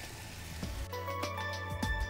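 Vegetables in a creamy sauce sizzling softly in a frying pan, then background music comes in about a second in, with steady held tones and light clicking percussion.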